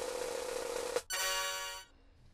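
About a second of hiss with a faint steady tone in it, then, after a brief gap, a flat buzzing electronic tone with many overtones that lasts under a second and cuts off.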